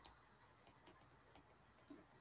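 Near silence with a few faint ticks: a stylus tapping on a tablet's glass screen while handwriting is added.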